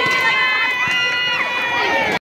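Spectators, many of them children, shouting long drawn-out cheers that overlap one another, with a couple of short knocks in between.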